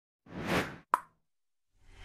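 Animated-intro sound effects: a short whoosh that swells and fades, then a single sharp pop just under a second in.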